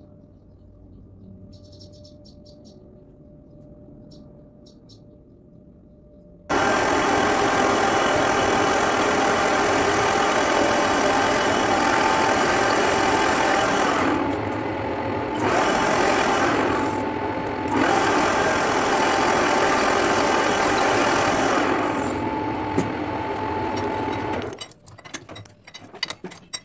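Metal lathe cutting a spinning metal workpiece, peeling off long ribbons of chips. The loud, steady cutting noise starts abruptly about six seconds in, dips briefly twice, and stops shortly before the end.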